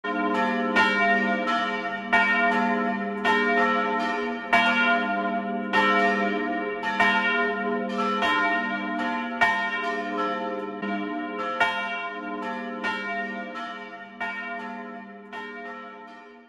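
Church bells ringing, with a new stroke about every half second to second and each note ringing on under the next. The ringing fades gradually toward the end.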